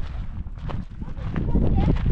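Footsteps crunching on a gravel path in an uneven walking rhythm, with wind rumbling on the action camera's microphone.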